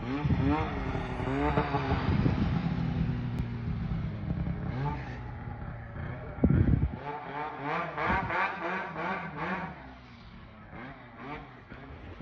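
Snowmobile engine revving in deep snow, its pitch rising and falling unevenly. About seven seconds in the engine drops away, and a person says a word and laughs.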